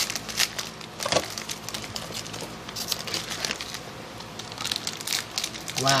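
Foil wrapper of a Panini Prizm basketball card pack crinkling and tearing as the pack is opened, in irregular crackles.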